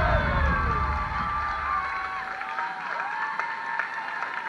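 An audience cheering with long, gliding cries and clapping, while the dance music fades out underneath. The overall level falls steadily.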